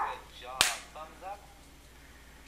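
A single sharp snap about half a second in: the crushable glass ampoule inside a 3M LeadCheck lead-test swab breaking as its barrel is squeezed between the fingers, releasing the test liquid.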